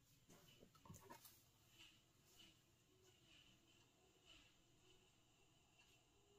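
Near silence: room tone with faint rustles and light taps of paper sheets and a clear acrylic template being lined up on a cutting mat.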